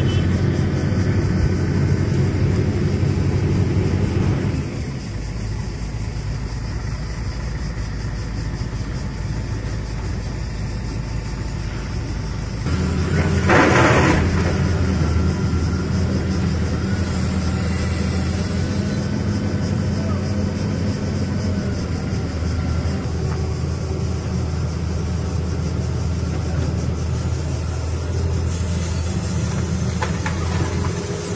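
Heavy diesel engines of a tracked excavator and a tipper truck running steadily with a low drone, and a brief louder rushing burst about 13 to 14 seconds in.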